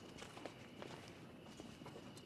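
Quiet footsteps of people walking slowly: soft, irregular scuffs and taps over a faint steady high tone.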